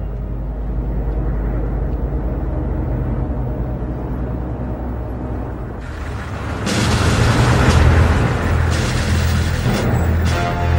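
Film soundtrack: a low, steady, droning score, joined about six seconds in by a louder rush of noise as military jeeps drive in.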